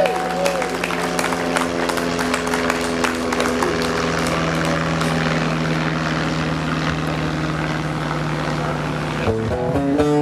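Audience applauding between songs, many quick claps over a steady low hum that stops suddenly near the end. Acoustic guitar notes start up just before the end.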